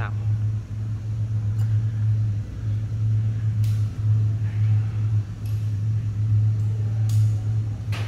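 A steady low hum of workshop machinery, broken by a few short hisses and faint clicks.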